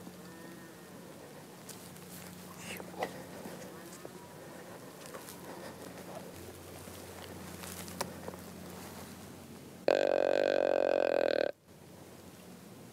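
A single loud, buzzy deer grunt lasting about a second and a half near the end, starting and stopping abruptly, over faint background with a few light clicks.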